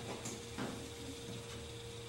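Quiet room tone with a faint steady hum, in a brief pause between a man's sentences.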